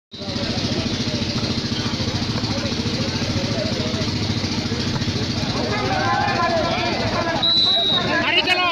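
An engine runs steadily close by with a fast, even pulse, under the voices and shouts of a crowd. Near the end a whistle gives one short, high blast.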